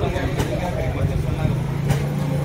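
A steady low engine hum, with people talking in the background and a few light clicks.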